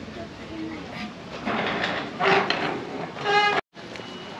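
Indistinct background voices over a general hubbub. A short, loud held tone comes near the end, then the sound cuts out abruptly for a moment.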